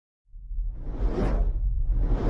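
A whoosh sound effect: a rushing swell of noise over a deep rumble. It starts about a quarter second in, peaks near the middle and eases off near the end.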